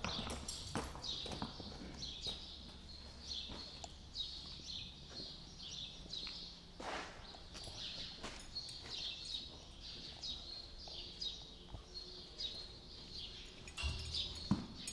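Small birds chirping over and over in short, high chirps, with a few scattered knocks and scuffs from a saddled horse's hooves and tack as it is handled.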